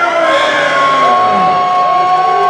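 Wrestling crowd cheering, with long held shouts and whoops over general crowd noise.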